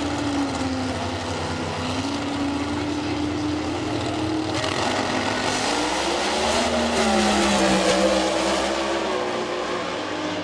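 Two drag-race cars' V8 engines running at the start line with rough, loud idle tones. From about halfway through, one revs louder, its pitch climbing and falling as the car creeps forward.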